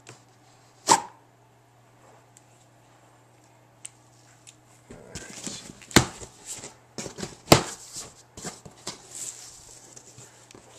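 A large cardboard shipping box being opened and its foam packing handled: one sharp knock about a second in, then from about five seconds a run of cardboard and foam rustling with several loud knocks.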